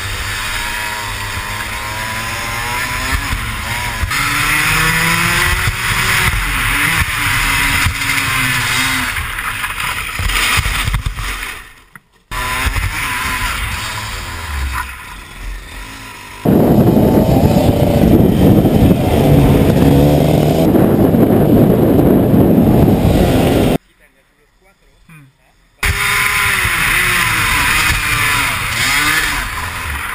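Racing kart engine heard from the onboard camera, its pitch rising and falling as the throttle opens and closes through the corners. Midway a loud rushing noise covers it for several seconds, followed by a brief near-silent gap of about two seconds before the engine returns.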